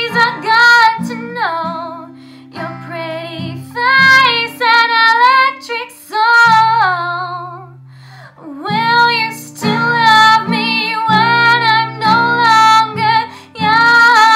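A teenage girl singing in a wavering voice on long held notes, accompanying herself on an acoustic guitar. Her voice breaks off briefly a little past the middle, and the guitar chords ring on under her.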